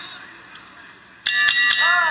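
Metal ring bell struck three times in quick succession about a second in, ringing on afterwards: the bell ending the fight's final round.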